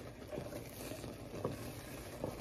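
Pot of thick macaroni and cheese simmering, bubbling faintly while a wooden spoon stirs it, with a few soft pops.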